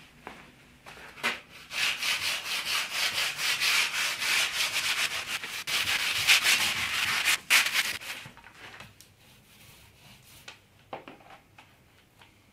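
Hand-sanding along a long painted junk-rig yard (spar), quick back-and-forth rubbing strokes that start about two seconds in and stop about two-thirds of the way through, followed by a few faint rubs and knocks.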